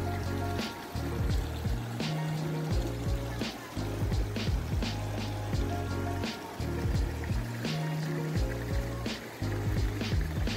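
Background music with a steady beat: held bass notes that change every second or so under regular percussion hits.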